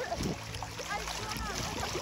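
Sea water lapping and splashing gently around a swimmer, with short calls of voices in the distance.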